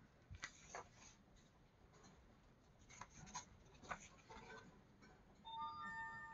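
Faint paper rustles and light clicks as the pages of a paperback coloring book are turned. About five and a half seconds in, a soft chime of several held tones starts.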